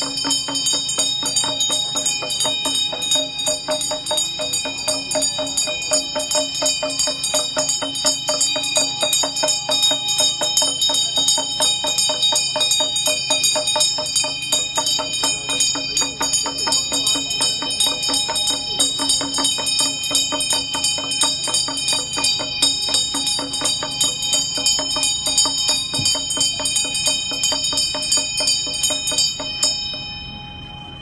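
Tibetan Buddhist hand bell (ghanta) rung continuously in quick, even strokes that stop suddenly at the very end.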